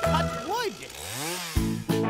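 Toy chainsaw revving, its pitch rising and falling twice, with a children's music track before it and cutting back in near the end.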